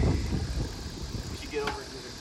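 Wind rumbling on the microphone of a moving bicycle, with a short pitched call about a second and a half in.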